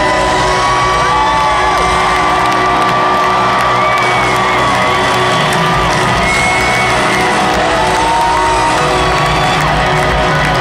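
A live rock band playing in an arena, heard from the stands, with the crowd cheering and whooping over it. Long held notes ring out above the band throughout.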